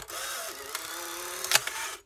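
Polaroid Spectra SE's film-ejection motor and rollers running for about two seconds to push out the dark slide, a steady whir with a faint click partway and a sharper click near the end before it stops. The owner says the ejection is set off by a sensor inside that he damaged while fixing the camera.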